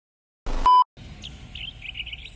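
A short, loud electronic beep about half a second in, then birds chirping repeatedly over a faint steady outdoor background.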